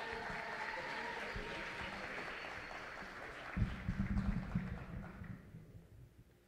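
Audience applauding, the clapping dying away near the end. A few low thumps join in during the last couple of seconds.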